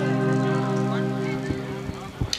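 Instrumental passage of a Bengali baul folk song: a held keyboard chord slowly fading, with drum strokes coming in about one and a half seconds in.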